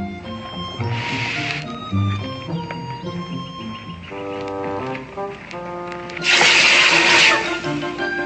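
Background music, with a loud hiss of steam about six seconds in as hot iron is quenched in a blacksmith's water bucket, lasting about a second. A shorter, fainter hiss comes about a second in.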